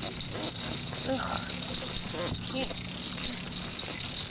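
Night insects, such as crickets, chirping in a steady high-pitched pulsing chorus.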